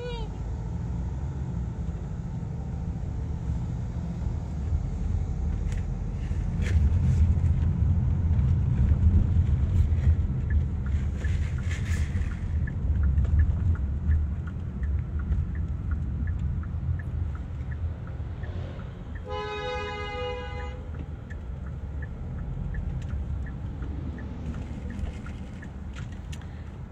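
Low, steady road and engine rumble inside a moving car's cabin, louder for several seconds in the middle. About three quarters of the way through, a vehicle horn sounds once for about a second and a half.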